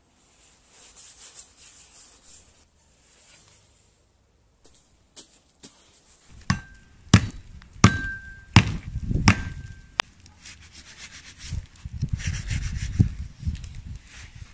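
Scraping of a singed beef head's scorched hide, then five sharp hatchet chops into the head, a little under a second apart, several of them leaving a brief metallic ring from the blade. Rougher knocking and rubbing follow near the end.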